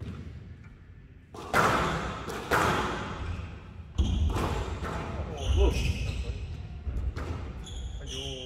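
Squash rally: the ball is struck by rackets and hits the court walls, about six sharp cracks roughly a second apart starting just over a second in, each ringing out in the large hall.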